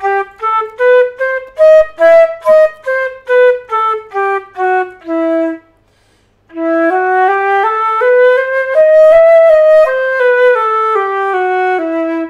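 Flute playing a one-octave E minor scale up and back down, each note tongued separately. After a short pause about halfway through, the scale is played again slurred, the notes joined smoothly.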